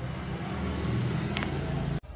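A steady low rumble of background noise, with a single short click about one and a half seconds in.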